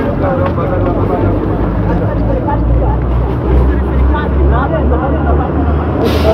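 Indistinct voices of several people talking at once over a steady low rumble, heard on a handheld phone's microphone.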